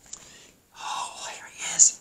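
A person whispering a short phrase, breathy and without voiced pitch, ending in a hissy 's'-like sound.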